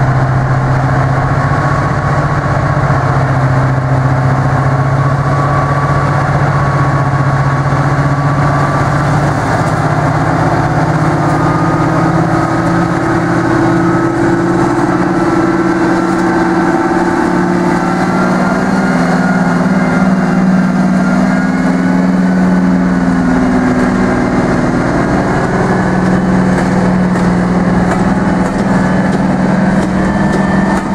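Class 55 Deltic 55022's twin Napier Deltic two-stroke opposed-piston diesel engines, loud, at a steady idle at first. About nine seconds in they open up, and their pitch climbs steadily as the locomotive pulls its train away.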